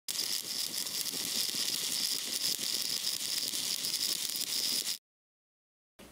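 Stick-welding arc from a 7018 electrode: a steady, dense crackle and hiss that cuts off suddenly about five seconds in.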